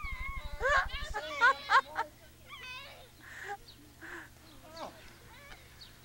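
Young children shrieking and laughing in rough play, high squealing voices loudest in the first two seconds, then quieter scattered calls and giggles. A low hum stops about a second in.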